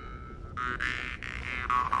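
Jew's harp (vargan) played in a quick rhythm of plucks, its twanging drone carrying a shifting overtone melody, over a low noisy rumble.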